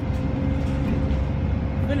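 Bus engine running, heard from inside the passenger cabin as a steady low drone with a faint steady tone above it.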